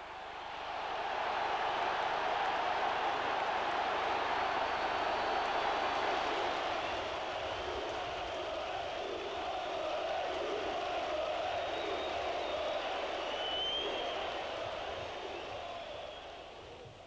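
Large football crowd cheering and applauding in a stadium as the team comes out onto the pitch. The noise swells about a second in, holds steady, and fades toward the end.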